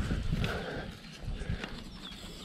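A blue perforated metal jump-ramp panel of an MTB Hopper being handled, with a low rumble of handling in the first half and a few light metallic knocks and rattles of its panels and latches.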